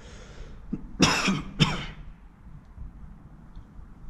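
A person coughing twice: once about a second in and again about half a second later.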